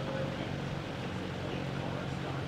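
Steady low hum and background noise of a large indoor arena, with faint voices in the background.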